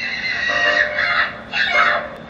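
Shrill screaming from the film's soundtrack: one long held scream, then a shorter second one near the end.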